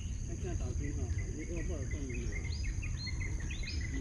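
Two otters calling rapidly, with short falling chirps and lower squeaks several times a second, over a steady high drone of insects.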